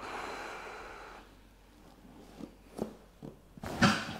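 A patient's long breath out through the nose, lasting about a second, on the cue to breathe out during a neck manipulation. A few faint ticks follow, then a brief sharper sound near the end.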